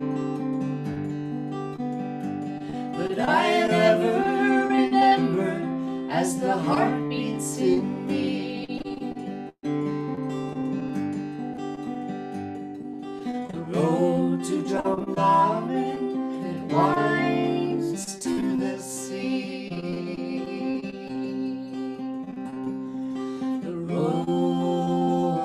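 Acoustic guitar picked in a steady folk accompaniment, with a woman singing phrases of a song over it about 3 seconds in and again around 14 seconds. The sound cuts out for an instant near the middle.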